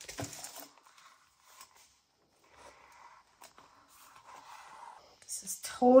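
Paper pages being handled during hand-sewing with gold thread: a short rustle at the start, then faint scratchy sliding and small clicks as the thread and pages are worked.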